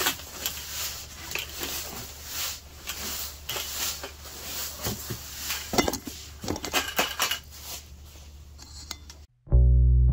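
Dry sand and powdered bentonite clay sliding and rattling inside a lidded plastic bucket as it is tipped and turned to mix the dry ingredients, with scattered knocks of the bucket, the loudest about six seconds in. The sound cuts off abruptly near the end and guitar music begins.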